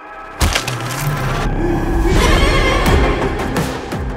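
Horror trailer score: a brief hush broken by a sudden loud hit about half a second in, then dense music that builds and swells.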